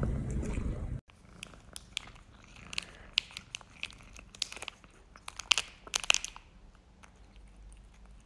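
A cat chewing a treat, cut off abruptly about a second in. A kitten then bites and chews a crunchy stick treat in a run of sharp crunches and clicks, loudest and closest together between about five and six seconds in, then tapering to faint chewing.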